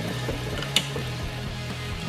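Small electric motor running with a steady low hum as it spins the rotor of a homemade DC motor. The homemade motor has no power of its own here; the hidden motor is what turns it. A single sharp click comes about three-quarters of a second in.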